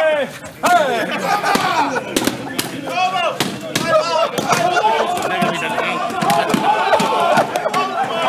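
A rapid series of sharp smacks as blows land on a man's bare back, with a group of men shouting and cheering over them.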